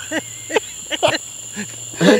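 Crickets trilling steadily in the night, with a few brief voice-like sounds, each a fraction of a second, over the top.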